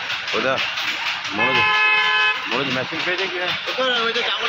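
A vehicle horn sounds once, a steady honk of about a second starting a little over a second in, among people talking.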